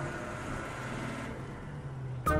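Steady running noise of a moving bus, heard from inside the passenger cabin, with a low hum underneath. The high hiss thins out a little past halfway.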